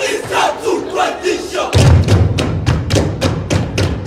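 Loud group shouting from the performers and crowd. About two seconds in, loud music with a heavy bass and a fast, even beat starts suddenly over the PA.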